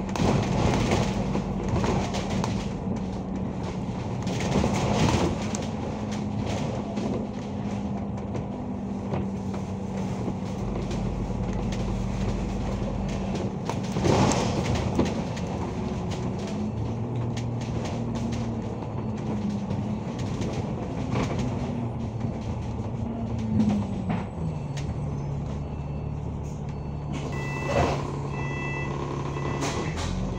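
Alexander Dennis Enviro500 MMC double-decker bus heard from on board while driving: a steady engine drone with a held whine whose pitch drops a step about three-quarters of the way through, and occasional knocks and rattles from the body. A few short high beeps sound near the end.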